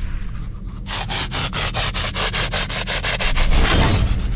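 A fishing reel clicking fast and evenly, about nine ticks a second, while a hooked carp is played on a bent rod from a boat. A steady low rumble runs underneath.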